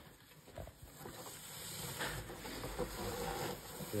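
A burlap sack rustling and brushing against a cardboard box as hands handle it and tuck it over the box.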